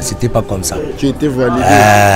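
A man's voice: a few short words, then, from about one and a half seconds in, a long drawn-out quavering vocal sound with an even wobble in pitch.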